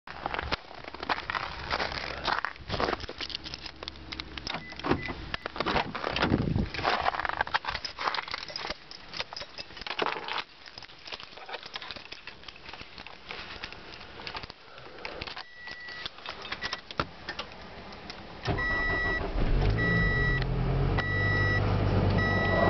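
Keys rattling and handling noises, then near the end the 2012 Scion xB's four-cylinder engine starts from cold in freezing weather and settles into a steady idle. A dashboard chime beeps repeatedly, about once a second, once the engine is running.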